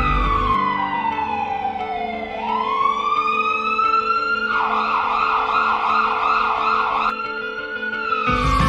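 Electronic emergency-vehicle siren. It starts with a slow wail, falling over about two seconds and rising again over the next two, then switches to a rapid warble for about two and a half seconds, and swings back into a rising wail near the end, over a steady low hum.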